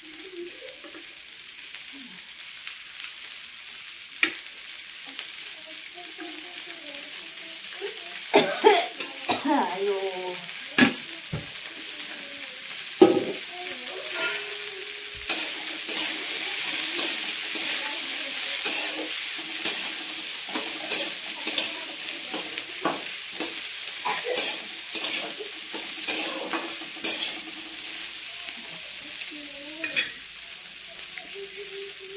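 Chopped okra (bhindi) frying in a metal pan on a gas stove, with a steady sizzle that grows louder. A metal spatula stirs and scrapes against the pan in quick, repeated strokes, most often in the second half.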